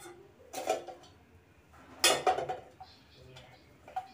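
Steel kitchenware clattering twice: a short clink about half a second in and a louder clatter about two seconds in, as coriander leaves are put into the pot of sabzi.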